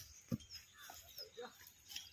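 A hand hoe thudding into hard, dry soil while digging out roots: one sharp strike about a third of a second in, with a few fainter knocks later. Faint bird chirps sound above it.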